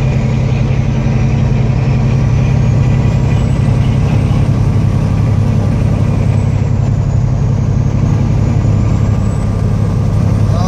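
Steady low drone of a car's engine and tyre noise, heard from inside the cabin while cruising at highway speed.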